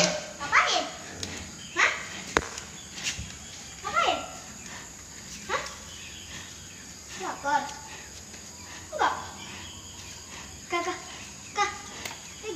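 Short, scattered bursts of voices, children's talk and calls, each falling in pitch, coming every second or two over a quiet background.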